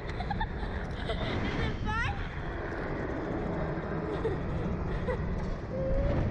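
Wind buffeting the microphone as the Slingshot ride capsule swings through the air, with a child laughing and giving short high squeals, a quick run of them about two seconds in.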